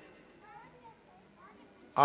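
A pause with only faint background voices, high-pitched and possibly children's, giving a few short calls about half a second in and again around a second and a half.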